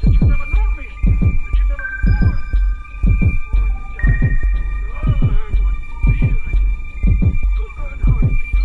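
Electronic sound-art texture: a low throbbing pulse about once a second, sometimes doubled like a heartbeat, each beat sliding down in pitch, under steady high whistling tones.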